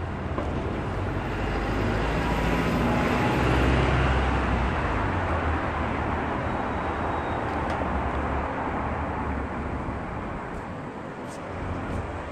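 Road traffic: a passing vehicle's noise swells to a peak about four seconds in, then slowly fades.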